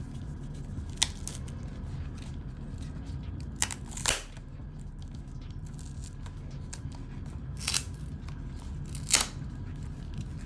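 Worn ear pad being peeled by hand off a Beats Studio Wireless headphone ear cup: a handful of sharp plastic clicks and short tearing sounds as the pad's edge comes away from the cup, the loudest near the end.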